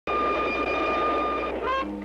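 Train horn sounding one steady high note over the rumble of a running train. It cuts off about one and a half seconds in as brass band jazz begins.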